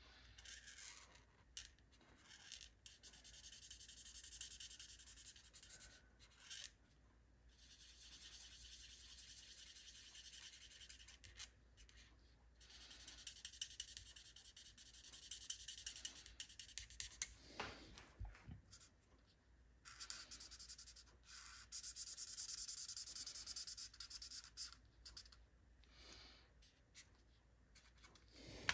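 Stampin' Blends alcohol marker nib rubbing over cardstock while coloring in, a faint scratchy hiss in stretches of a few seconds with short pauses between strokes.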